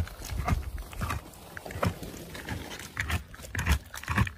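Wolf gnawing on a meaty leg bone: irregular crunches and clicks of teeth on bone, several a second, with dull low knocks.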